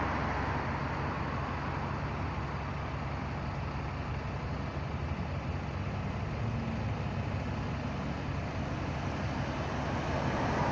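Steady low rumble of distant road traffic, an even noise with no sudden events.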